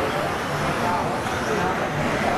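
A man's voice calling the race, heard amid the steady background noise of the hall.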